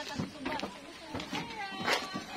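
Background voices of several people talking and calling out, in short scattered snatches, with a sharp knock near the end.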